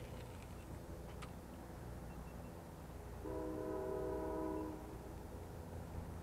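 A horn sounds once in the middle, a steady chord held for about a second and a half, over a low steady rumble.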